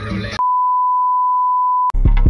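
Song with singing cuts out suddenly and is replaced by a single steady, pure, high-pitched beep lasting about a second and a half: a censor bleep over the track. The music comes back with a click just before the end.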